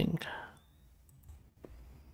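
A few faint, sharp computer mouse clicks, spaced a fraction of a second apart, about a second and a half in, as browser menu controls are clicked.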